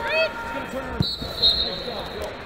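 Wrestling shoes squeaking on the mat in a couple of short chirps near the start, over voices in a large hall. A thin steady high tone starts abruptly about a second in.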